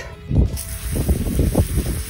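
Garden hose jet spraying water onto freshly pulled carrots on grass: a steady hiss that starts about half a second in, over a low uneven rumble.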